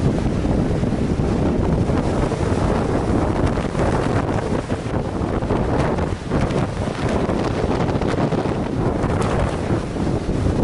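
Storm wind buffeting the microphone, loud and unsteady, over the continuous low noise of heavy surf breaking on rocks.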